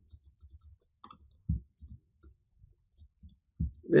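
Quiet, scattered clicks of a computer mouse, with a soft low thump about a second and a half in.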